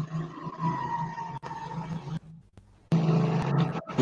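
Steady low buzzing hum with a hiss behind it on a wired earphone microphone's line. It cuts out to near silence briefly just after two seconds in, then comes back.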